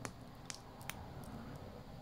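A plastic candy gel pen being squeezed out onto a piece of taffy: quiet handling with three small clicks in the first second over soft room tone.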